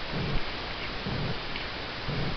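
Steady hiss of background noise, with a few soft low thumps about once a second.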